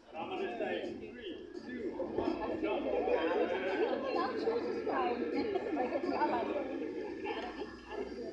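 Indistinct chatter of several people talking over one another.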